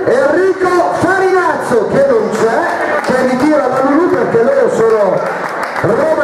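People talking continuously, a man's voice most prominent.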